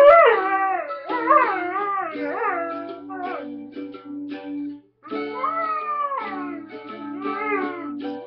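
Vizsla dog howling along to a mandolin, in long wavering wails that slide up and down over the plucked notes. The howling breaks off briefly about five seconds in, then starts again.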